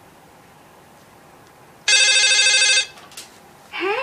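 Toy telephone giving one electronic, warbling ring about a second long, halfway through. A short click follows as the handset is picked up.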